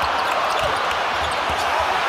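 Basketball arena crowd noise during live play, with a basketball thudding on the hardwood court several times.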